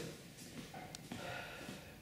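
Faint rustling and scuffling of two sambo wrestlers shifting their grip and moving around each other on a training mat, with one short sharp click about halfway through.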